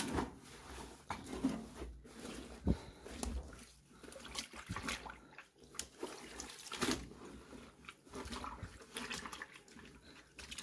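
Wet work clothes being pulled and shifted by hand in a top-loading washer tub full of sudsy wash water: irregular sloshing and splashing with dripping, as the load is rearranged after going off balance.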